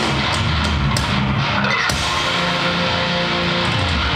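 A heavy metal band playing live, with distorted electric guitars and a drum kit. There are sharp drum and cymbal hits in the first two seconds, then a chord held ringing.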